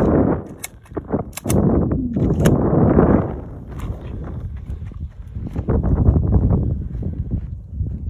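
Semi-automatic pistol being loaded and made ready: a few sharp metallic clicks as the magazine is seated and the slide is worked, then the pistol is pushed into its holster, over a low rumble of handling and wind.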